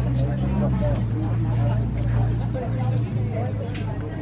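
Indistinct voices of people talking nearby, over a steady low hum.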